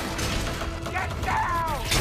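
Action-film sound-effects mix: a steady low rumble with mechanical clanks and creaks, and a short falling squeal between about one and two seconds in.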